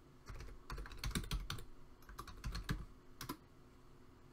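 Typing on a computer keyboard: a run of quick keystrokes at uneven spacing, stopping shortly before the end.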